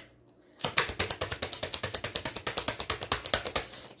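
Rapid, even clicking like a ratchet, about nine clicks a second, starting about half a second in and running for about three seconds.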